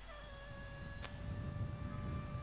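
Soft background music: a slow line of long held notes stepping down in pitch. A single sharp click about a second in, and a low rumble in the second half.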